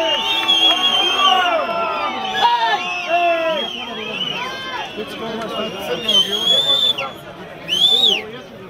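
A referee's whistle blown in two long, trilling blasts, one about half a second in and one about six seconds in, over several men shouting on the field.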